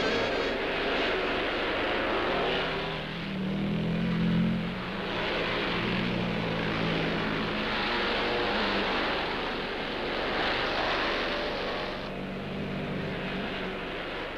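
Motorcycle engines running and revving, the pitch rising and falling, loudest about four seconds in, over a steady hiss.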